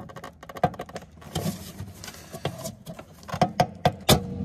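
Small clicks and rattles of a car's automatic transmission computer being pushed back in its metal mounting bracket against its retaining clips, with a quick cluster of clicks near the end.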